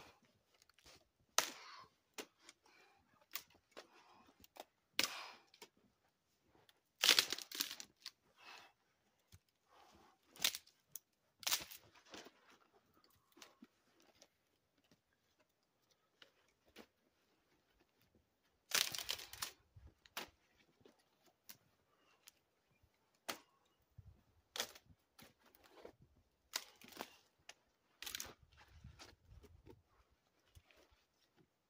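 Dry dead cedar branches snapping and cracking as they are broken off by hand for firewood. The snaps come sharp and at irregular intervals, the loudest runs of cracking about seven seconds in and again about nineteen seconds in.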